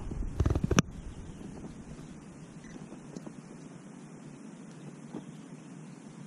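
Steady low wind noise on the microphone, with a few handling bumps and one sharp click in the first second.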